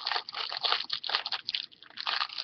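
Clear plastic fortune cookie wrapper crinkling and crackling in the hands as it is opened, with irregular crackles throughout.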